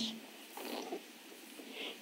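A pause between a woman's spoken sentences: low room noise in a small indoor space, with a couple of faint brief sounds.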